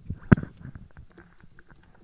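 Handling noise close to the lectern microphone: one sharp knock about a third of a second in, among soft, irregular rustles and small clicks.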